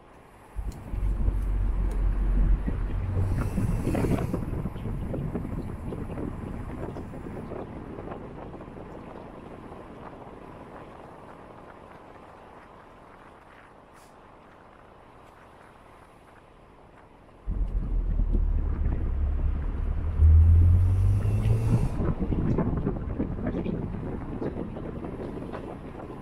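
Moving car with wind on the microphone: a deep engine and wind rumble comes in suddenly about a second in, fades slowly, then comes in suddenly again past the middle, its hum stepping up in pitch as if accelerating before fading once more.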